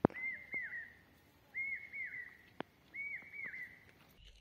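A bird calling: three pairs of whistled notes, each note arching up and dropping away, repeated about every second and a half. A sharp click right at the start and a smaller one about two and a half seconds in.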